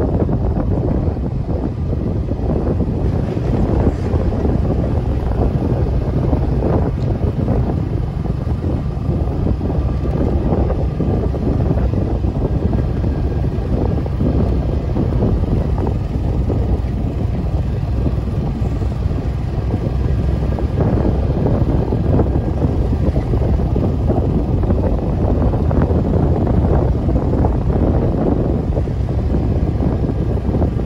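Steady wind rumble buffeting the microphone of a moving camera, mixed with the running noise of a motorcycle ride.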